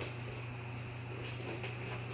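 A steady low electrical-sounding hum with faint room noise, and faint handling of a cardboard box.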